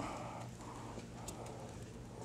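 Faint scratching and light tapping of fingernails picking at the tight end flap of a cardboard card-game box, with a few small clicks.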